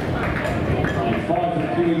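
A public-address announcer's voice introducing athletes by lane over steady background noise; the voice comes in strongly a little past halfway.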